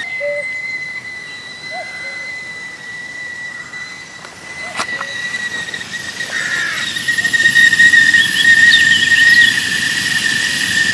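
Whistling kettle on a camping gas stove at the boil: one steady high whistle that grows louder after about seven seconds.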